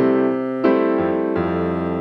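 Piano playing a bossa nova rhythm pattern very slowly, hit by hit: a chord struck about two-thirds of a second in, then a low bass note added at about 1.4 s, each left ringing and slowly fading.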